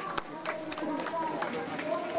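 A small group of people talking at once, their voices overlapping into indistinct chatter, with a few claps near the start as the applause dies away.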